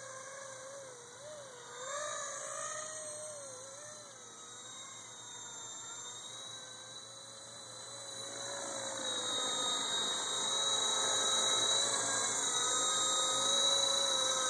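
Electric motor and rotor whine of a Honey Bee FP V2 micro RC helicopter fitted with a CP3 Super 370 main motor and a direct-drive tail motor, wavering in pitch as it flies. It grows louder in the second half.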